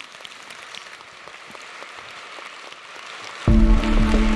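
Audience applauding steadily, a dense patter of many hands clapping. About three and a half seconds in, loud outro music with a deep bass note starts over it.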